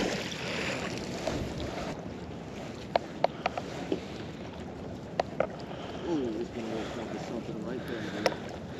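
A heavy fishing magnet hits the river with a splash at the start, followed by water and wind noise that settles after a couple of seconds. Then comes the quieter rustle of the wet rope being hauled back in hand over hand, with a few sharp clicks.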